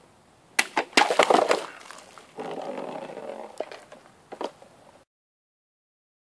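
A sword cutting through a stack of liquid-filled plastic bottles: a quick run of sharp cracks about half a second in, then the cut pieces clattering down, with a few lone knocks later. The sound cuts off abruptly near the end.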